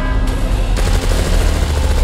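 Action-film sound effects: a heavy low rumble, joined about a second in by a dense, rapid crackle.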